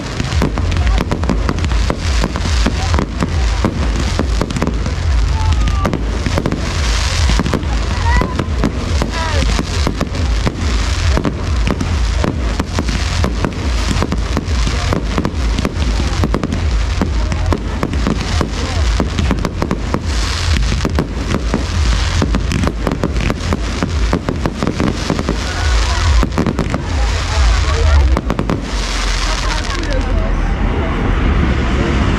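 Fireworks display: a dense, continuous run of bangs and crackling, with a few short whistles about eight seconds in. It thins out near the end.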